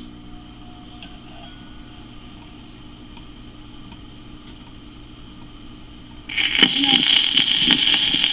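A click as the Hamilton Electronics record player is switched on, then its turntable motor runs with a low steady hum. About six seconds in, the stylus meets the 1943 home-recorded disc and loud surface hiss and crackle start suddenly, with a muffled voice on the recording beginning under the noise.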